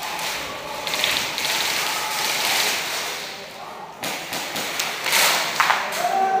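Airsoft guns firing rapid bursts in a large, echoing indoor hall. There is a sharp knock about two-thirds of the way in, and the loudest burst comes near the end.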